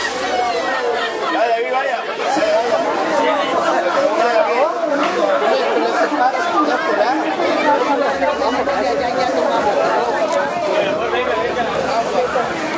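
Chatter of several voices talking over one another, with no single voice standing out.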